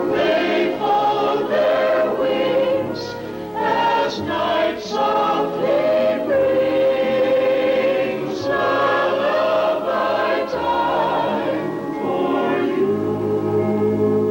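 A choir singing a soundtrack song with musical accompaniment, some notes long and held.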